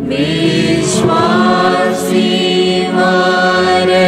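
Background music: a choir singing a devotional hymn over a steady low accompaniment, the sung notes changing about once a second.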